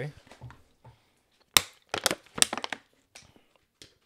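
Handling noise close to the microphone: a quick cluster of sharp crackles and clicks, starting about one and a half seconds in and lasting about a second, with a couple of faint clicks after.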